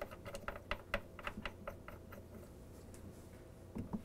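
Faint, irregular small clicks of a loosened threaded cap being spun off by hand from an ice maker's brass water-inlet fitting. The clicks come quickly for about two seconds, then a few more near the end.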